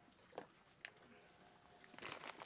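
Near silence: faint outdoor background, with two brief soft sounds about half a second and just under a second in.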